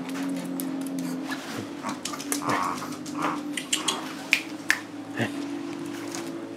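Small dogs making a few short whines, with sharp clicks and taps as they come in over a door threshold. A steady low hum fades about a second in.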